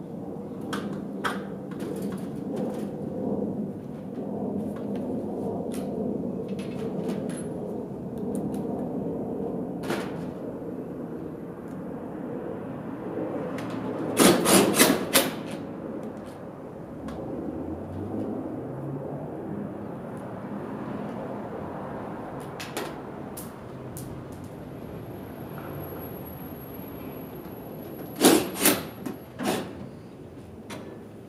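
A hand tool worked against a trailer's sheet-metal side panel during siding repair, giving two loud runs of three or four short sharp bursts, one about halfway through and one near the end, over a steady background of shop noise.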